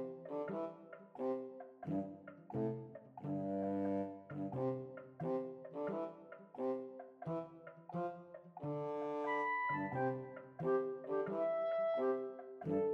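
Instrumental background music with short, separate notes in a steady, bouncy rhythm.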